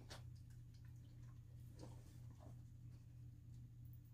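Near silence: room tone with a steady low hum and a few faint soft ticks.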